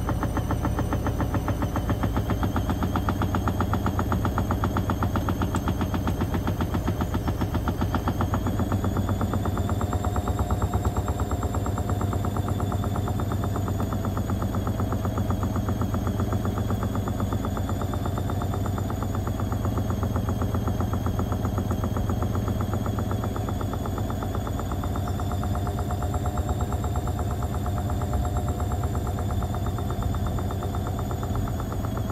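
Indesit IWB washing machine spinning at speed: a steady motor whine over a low hum, with a fast, continuous rattling clatter from the drum and cabinet. The whine rises slightly about ten seconds in and then wavers in pitch.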